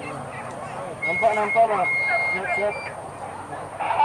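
Men shouting calls to hunting dogs in a field during a boar hunt, louder from about a second in. A thin, steady high tone sounds briefly under the shouts.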